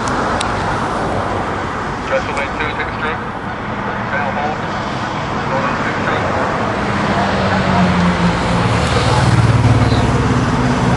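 An engine running over a steady rushing noise, its low hum growing louder near the end.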